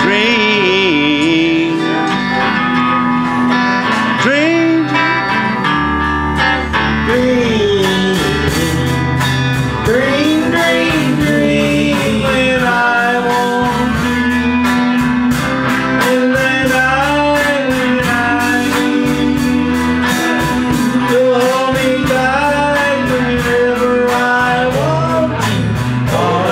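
Live country band playing a song in G over a G, E minor, C, D chord pattern: electric and pedal steel guitars, acoustic guitar and drums, with a man singing the melody. The drums' steady beat fills out about eight seconds in.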